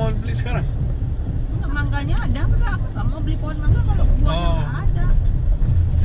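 Steady low rumble of a car's engine and tyres heard from inside the cabin while driving, with people talking over it.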